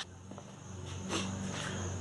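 Quiet garage background: a low steady hum with a faint high steady tone above it, and a couple of soft handling ticks as the phone is moved.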